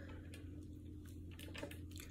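Quiet room with a steady low hum and a few faint, soft clicks.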